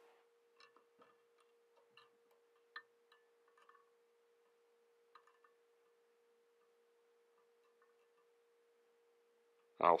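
Quiet fly-tying handling: a few faint small clicks and taps as a twisted herl dubbing loop is wound forward along the hook with hackle pliers, the clearest a little under three seconds in. A faint steady hum sits underneath.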